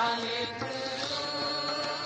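Sikh Naam Simran: a sung, melodic chant of "Waheguru" over steady held instrumental tones.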